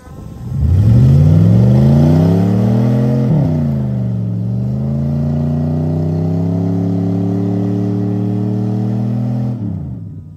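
Dodge Ram 1500 pickup's engine revving hard under load as it tows a dead car uphill: the revs climb for about three seconds, fall back sharply, then rise again and hold steady before dropping off near the end.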